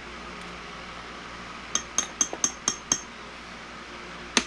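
Six quick, ringing clinks, about four a second, a little under two seconds in: a metal measuring scoop tapped against the rim of a glass measuring cup, knocking glitter into the liquid plastisol. A steady low background noise runs underneath.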